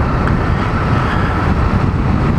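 Small Honda street motorcycle being ridden along a road, its engine running steadily under loud wind noise on the helmet microphone.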